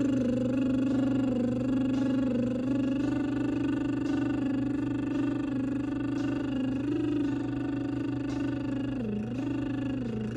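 A woman humming one long sustained note with closed lips, holding the pitch steady, with a brief dip and rise in pitch near the end, over a steady low background hum.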